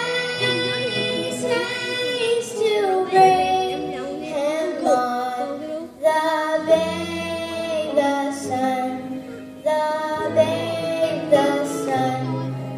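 A young girl singing a Christmas song into a microphone, in long held phrases with short breaths between them.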